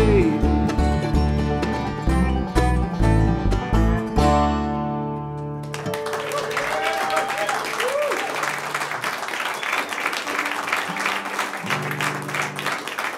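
Acoustic bluegrass band of guitar, banjo, mandolin, resonator guitar and upright bass playing the last bars of a song, ending on a chord that rings out until nearly six seconds in. Then the audience applauds, with a few whoops.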